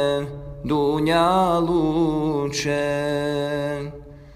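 Male voice singing an ilahija, a Bosnian Islamic devotional song, in long drawn-out vowels that bend and glide over a steady low drone. The voice breaks off briefly about a third of a second in and stops again just before the end.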